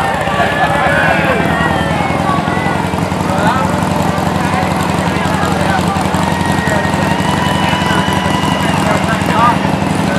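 A pickup truck's engine running low and steady as it tows a float slowly past, under the chatter of a crowd of voices.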